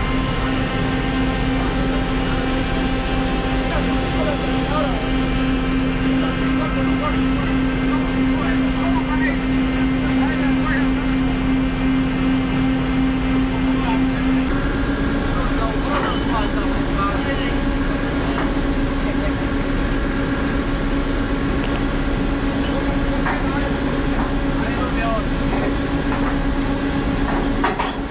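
Ship's machinery running with a steady, even drone and hum, which shifts slightly in pitch about halfway through. Indistinct voices can be heard faintly behind it.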